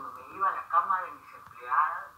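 A woman talking, her voice thin and tinny.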